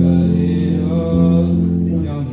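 Solo live performance: a male voice holding long sustained sung notes, moving to a new pitch about a second in, over guitar accompaniment.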